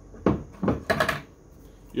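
A few light knocks and clicks of a plastic water-bucket spigot being picked up and handled, bunched in the first second.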